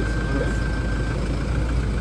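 Toyota Land Cruiser Prado engine idling with a steady low rumble.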